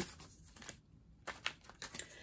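Tarot cards being shuffled by hand, faintly, with a few short papery clicks of cards against each other, most of them in the second half.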